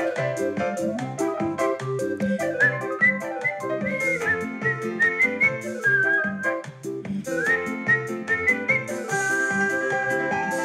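A pop song's instrumental break with keyboard chords and a steady beat, and a whistled melody over it that slides up into some notes and holds one long note near the end.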